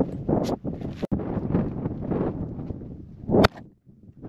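Rustling and knocking of a folding camp chair being opened and set down, over rough wind noise on the microphone, with one sharp clack about three and a half seconds in.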